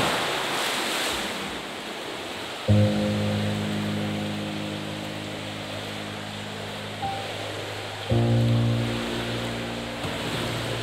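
Churning water from a dive into a swimming pool, loudest at the start and fading into a steady watery wash. Deep sustained music chords come in about three seconds in and again about eight seconds in.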